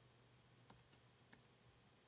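Faint keystrokes on a computer keyboard: two sharp key clicks about two-thirds of a second apart, over a low steady hum.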